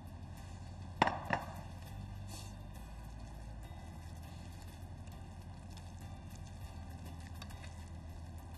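Gloved hands working raw egg into minced chicken in a glass baking dish: two sharp knocks about a second in, then quiet hand-mixing over a steady low hum.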